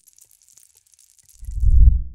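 Logo sting of small plastic pieces clattering: a quick spray of light clicks and ticks, then a deep low hit that swells about a second and a half in and is the loudest sound.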